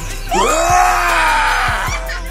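A young man's long scream, rising and then falling in pitch, starting about a third of a second in and lasting about a second and a half, over a hip-hop beat.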